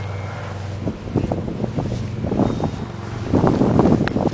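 Gusty wind noise on the microphone, loudest near the end, with a steady low hum during the first second.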